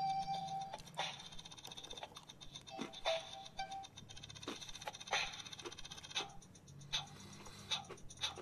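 Faint, simple electronic beat from the Oreo DJ Mixer's small toy speaker, with sharp clicks about once a second. A held tone stops less than a second in.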